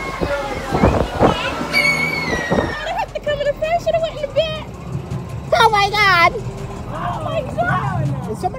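People's voices, untranscribed chatter, with one loud high voice rising and falling about five and a half seconds in. Under them, from about three seconds in, a low steady mechanical hum from the moving ride car and its lift machinery.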